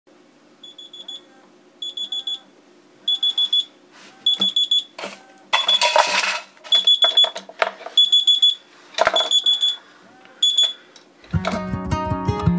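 Smartphone alarm going off: groups of quick high-pitched beeps repeating about once a second, getting louder, with a burst of rustling about halfway. The beeping stops shortly before the end, and acoustic guitar music then comes in.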